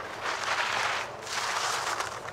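Ski edges scraping on hard snow as a slalom skier carves through the gates: a hiss that swells with each turn, twice in quick succession.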